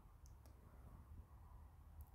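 Near silence with two faint, sharp clicks about a quarter and half a second in: a stylus tapping on a tablet screen while writing.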